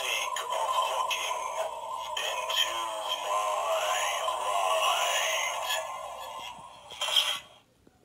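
Tekky animated haunted lamp Halloween prop playing its scary-sounds soundtrack through its small built-in speaker: thin, bass-less eerie music with wavering, gliding wordless voice sounds. It fades, gives a short louder burst near the end, then cuts off suddenly.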